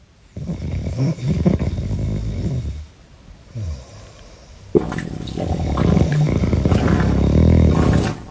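A sleeping person snoring very loudly: two long, rough, rumbling snores, the second one louder and longer, starting a little over halfway through.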